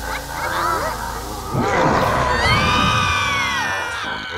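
Cartoon children cheering and laughing. About a second and a half in, a louder cartoon sound effect with gliding, swooping tones takes over.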